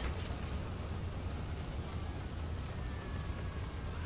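Steady low rumble with a light hiss: outdoor background noise, with no distinct events.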